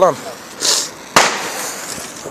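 A single sharp firecracker bang a little over a second in, echoing briefly off the surroundings, with a short hiss about half a second before it.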